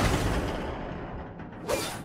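Cartoon crash sound effect: the noisy tail of a crash fading away over about a second and a half, followed near the end by a short mechanical clunk.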